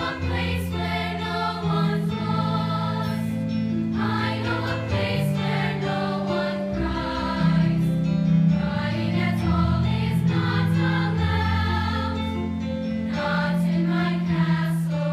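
A mixed high school choir singing in harmony, holding sustained chords that change every second or two.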